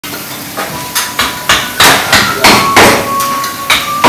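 Repeated sharp metallic knocks, about three a second, several leaving a brief ringing tone, growing louder over the first two seconds.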